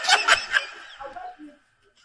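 A person's short laugh that trails off within about a second, followed by silence.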